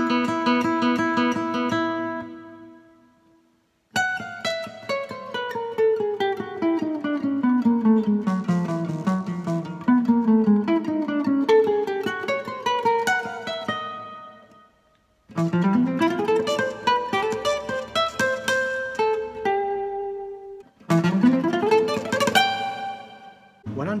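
Acoustic guitar picked with a plectrum, playing single-note alternate-picked scale runs that step down and back up the strings. The runs come in four phrases with short pauses between them.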